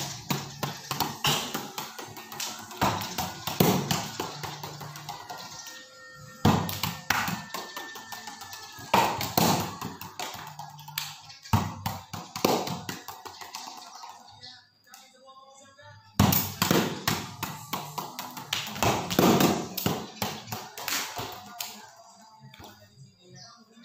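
Repeated irregular taps and knocks, roughly two a second, with a short pause about two-thirds of the way through, over background music.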